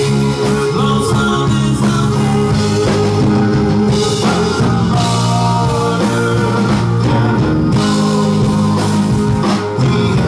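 Live rock band playing a song: electric bass and electric guitar, with singing.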